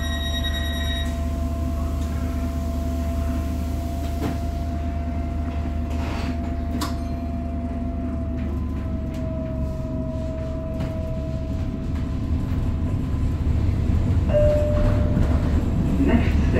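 Interior running sound of a Tyne and Wear Metrocar (Class 994): a steady low hum with a faint thin whine above it and a couple of light clunks about six to seven seconds in. The noise grows louder over the last few seconds as the car picks up speed.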